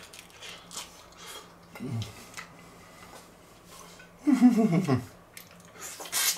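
A person chewing a mouthful of hard-shell taco, with faint crunching and mouth noises. A short hummed 'mm' comes about two seconds in, and a louder, longer 'mmh' falling in pitch comes near the end.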